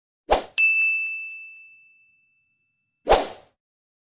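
Edited intro sound effects: a short noisy hit, then a single bright ding that rings out and fades over about a second and a half, and a second short hit near the end.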